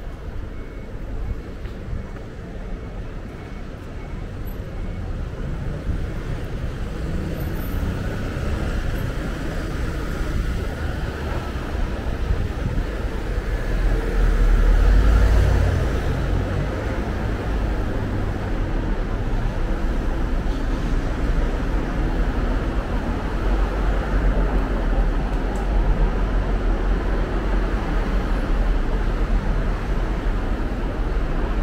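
Steady road traffic on a city street. The traffic noise builds gradually, and the loudest moment is a vehicle passing close about halfway through.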